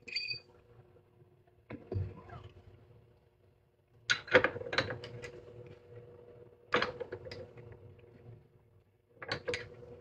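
Arbor press pushing a coin ring down into a ring-reducing die to size it down: a light metallic clink at the start, a dull knock, then three bunches of sharp metal clicks and knocks as the press lever is pulled and the punch bears on the ring.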